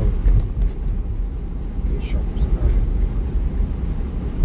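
Inside a moving car's cabin: the steady low rumble of engine and tyres on the road.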